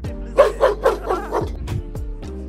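A large dog barking about five times in quick succession over background music with a steady beat.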